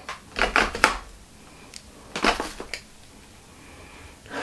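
Clicks and knocks of a plastic pressed-powder compact and makeup brush being handled, in two short clusters of three about two seconds apart.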